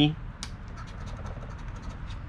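A coin scratching the latex coating off a scratch-off lottery ticket, in a quick series of short strokes.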